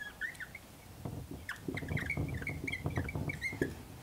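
Dry-erase marker squeaking on a whiteboard in a string of short strokes as a word is written. There is a brief squeak right at the start, then a busy run of squeaks and scratches from about a second in until shortly before the end.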